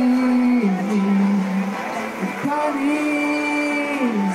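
A man singing slow, long held notes into a microphone with acoustic guitar, amplified through a stage PA. One sustained note steps down to a lower one early on, and after a short break past the middle he holds another long note.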